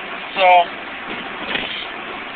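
Steady car-cabin noise, the even hiss of road and engine heard from inside a car being driven.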